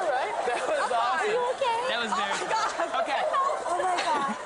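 Several voices talking over one another in excited chatter, high-pitched, with laughter.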